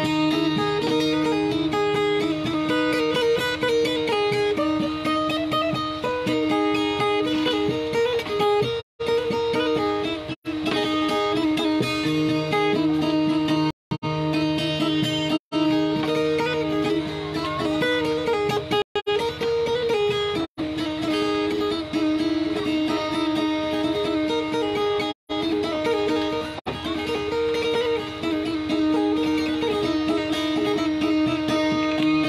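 Solo guitar picking a repeated melody over steadily ringing open-string notes. The sound drops out for an instant several times.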